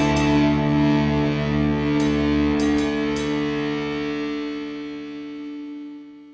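Music ending: a final guitar chord rings out, its held notes slowly fading away.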